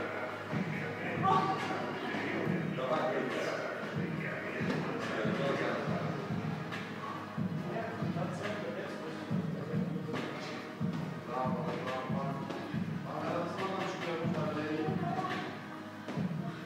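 Background music and voices in a large, echoing gym, with repeated dull thuds of an athlete's feet landing on rubber flooring during the workout.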